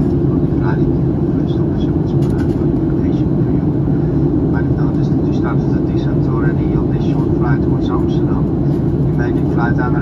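Steady cabin noise of a Boeing 737-900 airliner in flight: the even, deep sound of its jet engines and airflow heard from inside the cabin. Voices talk faintly over it.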